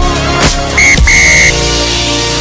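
Electronic background music with a steady beat. A referee's whistle cuts through it twice, a short blast then a longer one, signalling half time.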